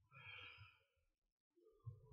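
A man's quiet, breathy exhalations, like sighs or silent laughter: one lasting about a second, then another near the end.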